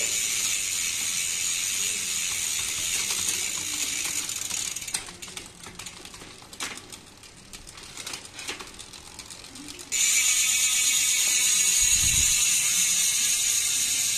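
Kinesis mountain bike's rear hub ratcheting in a steady high buzz as the rear wheel spins on a stand, its Shimano SLX drivetrain being run by hand at the crank. Around the middle the buzz drops to quieter, separate clicks, then it returns suddenly about ten seconds in.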